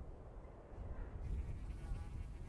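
Faint outdoor field ambience: a steady low rumble with a faint insect-like buzz, growing a little louder about a second in.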